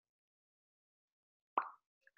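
Dead silence, then a single short pop about one and a half seconds in.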